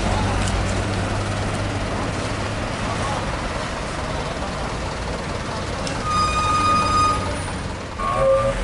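Road traffic at a queue of idling cars and trucks, with a steady low engine hum. Near the end a single high-pitched tone sounds for about a second.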